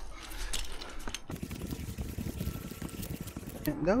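Irregular rustling and crackling from a tree climber ascending on a rope: climbing gear, rope and fir branches brushing and knocking close to a helmet-mounted microphone, with a brief dropout a little over a second in.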